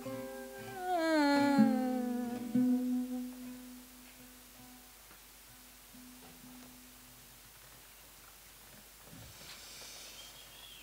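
A woman's voice holds a hummed note, then glides down in pitch about a second in, over plucked notes from a cuatro and a requinto guitar. The song ends and the sound fades by about four seconds, leaving a few soft plucked notes until about seven seconds in.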